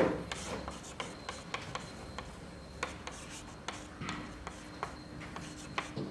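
Chalk on a chalkboard as an equation is written: an irregular run of short taps and scratchy strokes, several a second.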